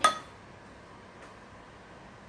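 A metal fork clinks once against a glass dish, with a short bright ring.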